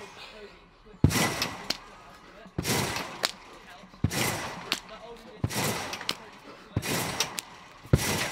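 A rectangular Acon spring trampoline being bounced on: five sharp thuds about a second and a half apart as a person lands on the bed, each trailing off in a short noisy rebound.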